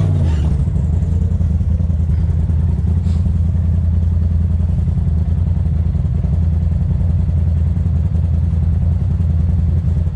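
Turbocharged Polaris RZR side-by-side's engine idling steadily with a low, even drone, heard from inside the open cab.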